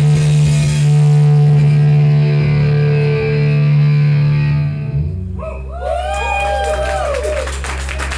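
Live heavy metal band with distorted electric guitars and bass holding a long sustained chord that breaks off about five seconds in. After it, several rising and falling gliding tones sound over a steady low hum.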